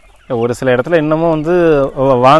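A man's voice talking, starting a moment in, with chickens clucking in the background.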